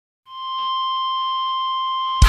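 A single steady, high-pitched electronic-sounding tone fades in about a quarter second in and holds level, with fainter higher tones above it: the opening tone of a thrash metal track.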